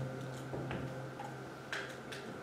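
A few light, irregular clicks and knocks of boots on a stage floor and props being handled, over a low steady tone that fades away.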